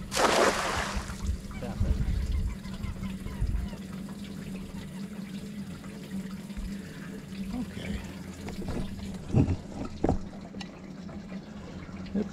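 A 10-foot cast net splashes down on the lake surface, one loud splash lasting about a second as the spread net and its weighted rim hit the water. Quieter handling noise follows, with a steady low hum underneath and two short knocks near the end.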